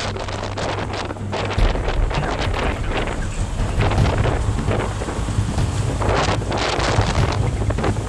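Wind buffeting the microphone in repeated gusts, over the low steady drone of a Jeep Wrangler Rubicon's engine as it crawls up a steep slickrock ledge.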